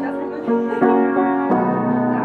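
Acoustic piano played live, chords struck and left ringing, with a new chord about every half second to second.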